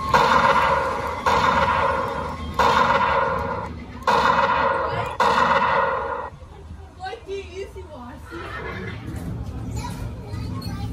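Mounted play rifle's gunshot sound effect fired again and again: four sudden ringing reports about a second apart, each fading over about a second, stopping about six seconds in. Fainter wavering sounds follow.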